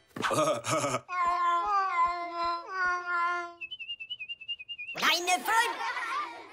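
Cartoon soundtrack: a short burst, then a hummed or whistled stepping melody with light ticks. A thin warbling high tone follows, and a loud vocal outburst comes near the end.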